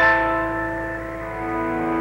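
Solo keyboard: a chord struck once and held, its notes ringing on and slowly fading.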